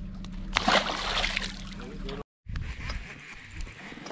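Boat's outboard motor idling with a steady low hum. About half a second in comes a splashy rush of water lasting about a second, as the smallmouth bass is handled and released over the side. A moment later the sound cuts out briefly and resumes with a quieter background.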